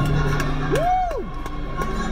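Live gospel performance audio: the band holding low sustained notes, with a single voice swooping up and back down about a second in.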